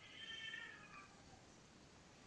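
A faint, high-pitched animal-like call lasting about a second, with a slight drop in pitch at its end.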